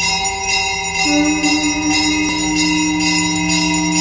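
A puja hand bell rung rhythmically during aarti, about three to four strokes a second, over steady held musical tones.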